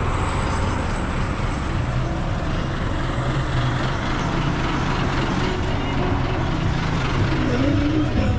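Coach bus's diesel engine idling close by, a steady low rumble.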